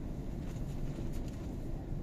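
Steady low rumble of a car's engine and tyres heard from inside the cabin as the car drives along a road.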